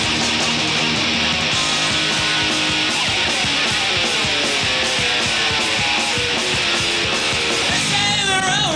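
Punk rock band playing an instrumental passage live, with no vocals: loud distorted electric guitars over bass and a steady drum beat.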